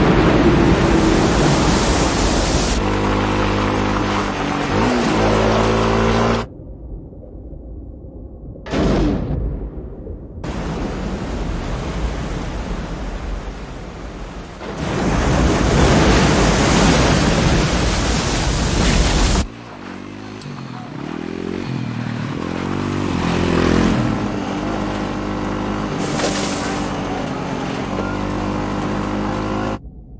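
Film soundtrack: a loud rushing roar of a tidal wave flooding a city, with orchestral chords underneath. This is followed by a quieter stretch with a brief whoosh, a second surge of roaring noise, then orchestral music with held chords.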